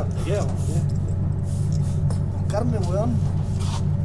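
Wordless vocal sounds from a person, short moans or grunts with a bending pitch, a few times over a steady low drone.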